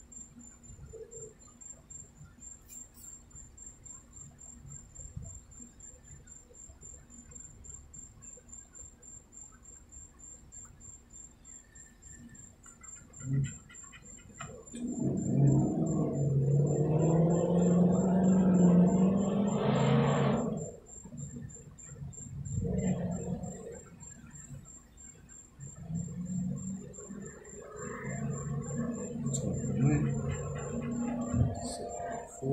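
A coin scratching the latex coating off a scratch-off lottery ticket in short, repeated strokes. About halfway through a louder low hum with a wavering pitch comes in for several seconds, and returns more faintly near the end. A faint, steady high-pitched whine runs underneath.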